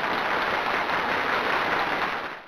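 Applause sound effect, a steady patter of clapping, played as the correct quiz answer is revealed.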